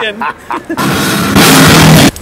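Heavy rock band playing very loud: distorted electric guitar and drums with a dense cymbal wash, coming in about a second in after a few short voice fragments and cutting off abruptly at the end.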